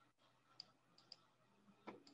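Faint computer mouse clicks, four in all: a single click, a quick pair about a second in, and the strongest near the end.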